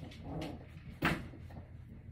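A puppy vocalizing while it plays: a brief whine, then a single sharp yip about a second in.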